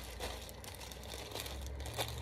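Clear plastic packaging bag crinkling as it is handled, a run of irregular crackles.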